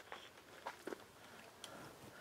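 Faint rustling of raspberry canes and leaves, with a few soft clicks, as a berry is picked by hand from the bush.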